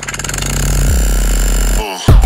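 Loud electronic noise music built from a hi-hat sample: a dense, rapidly repeating buzz over heavy bass, with a short rising glide and a brief break near the end.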